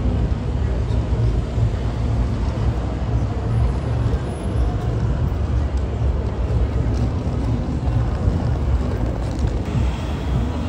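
City street ambience: a steady low rumble of road traffic, with indistinct voices.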